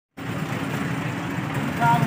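Steady low rumble of outdoor street background noise, with a brief voice near the end.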